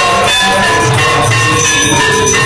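Temple aarti music of ringing bells and drums, loud and continuous, with several steady ringing tones held over a pulsing low beat.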